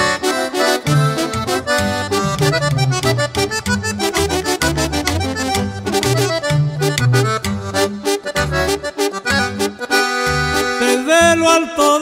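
Norteño music instrumental passage: a button accordion plays the melody over a steady, bouncing bass line.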